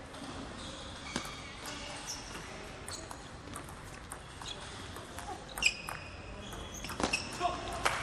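Table tennis rally: the plastic ball clicks off the rackets and the table at irregular intervals, with short squeaks from the players' shoes on the court floor. A quick run of louder clicks comes near the end as the point finishes.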